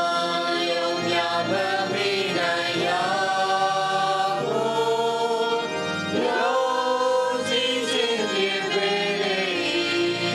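A choir singing a slow hymn, with long held notes.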